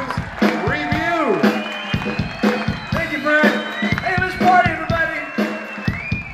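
Live rhythm and blues band playing, with a low note held throughout and regular drum hits under it, and voices over the music.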